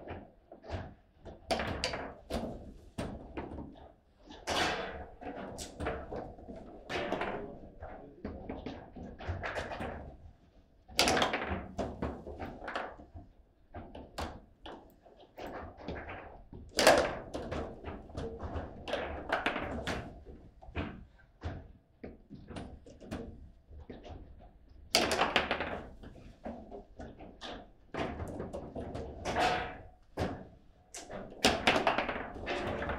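Table football play: irregular sharp knocks and clacks of the ball struck by the figures and of the rods knocking against the table, with a few louder hits about 11, 17 and 25 seconds in.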